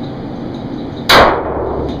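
A single handgun shot about a second in, very loud, fired inside an arched tunnel range, with a short echoing tail that fades over about half a second.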